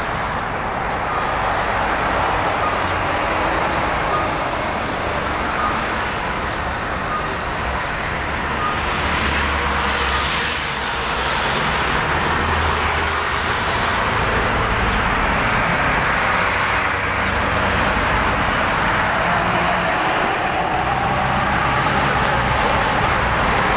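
Road traffic on a busy city street: cars and vans passing steadily, with one vehicle passing louder about ten seconds in.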